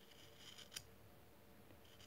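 Faint scraping of a sharp knife paring the edge of a small fresh willow disc, with one light click a little under a second in.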